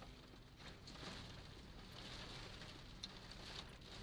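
Faint, even patter of precipitation on the car roof and snow-covered sunroof, heard inside the cabin, with a few soft ticks scattered through it.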